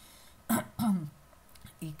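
A woman clearing her throat: a rough rasp about half a second in, followed by a short voiced sound that falls in pitch.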